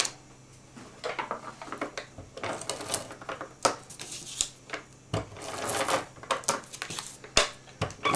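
Sheets of patterned paper and card being handled, rustling and sliding on a wooden tabletop, with irregular light taps and a sharp click near the end.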